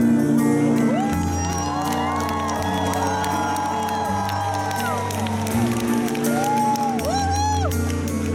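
A live band playing the opening of a slow song, with sustained chords over a steady bass, while audience members whoop and cheer over the music, several rising-and-falling whoops in the last seconds.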